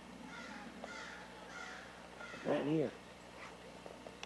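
A crow cawing three times in quick succession. Just past the middle comes a short, louder call from a person's voice.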